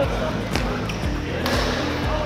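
Two sharp knocks about a second apart, typical of rackets striking shuttlecocks on nearby badminton courts, over the low background of a sports hall.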